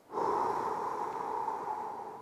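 A man's slow, deep exhale lasting about two seconds and fading toward the end: paced breathing to bring the heart rate down between exercise sets.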